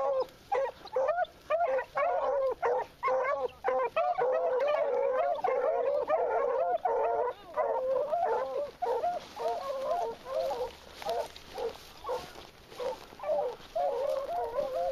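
A pack of beagles baying together in overlapping, wavering voices as they run a rabbit's scent. The chorus is dense at first, then thins out and grows fainter in the second half.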